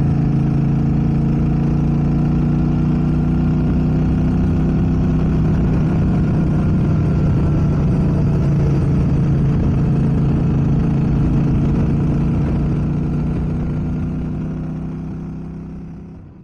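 Motorcycle engine running at a steady cruise, its pitch holding level throughout, fading out over the last few seconds.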